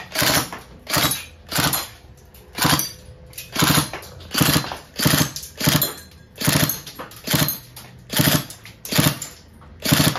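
Tokyo Marui MP5 airsoft gun firing single shots in semi-auto, about a dozen shots at uneven intervals of roughly half a second to a second.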